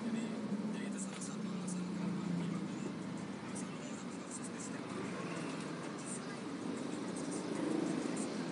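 Car cabin noise while driving slowly in traffic: a steady low engine and road rumble, with faint, indistinct talk underneath.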